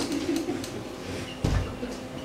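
A low, wordless voice murmuring briefly, then a single dull thump about one and a half seconds in.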